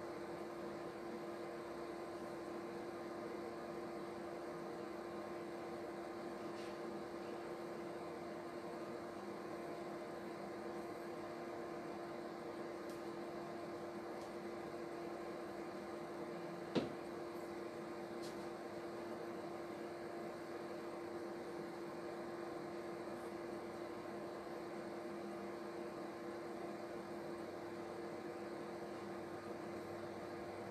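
A steady hum: one even low tone with fainter steady tones over a hiss, unchanging throughout, with a single sharp click about seventeen seconds in.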